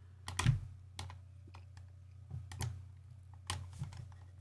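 A few scattered clicks and taps on a computer keyboard and mouse, irregularly spaced, over a low steady hum.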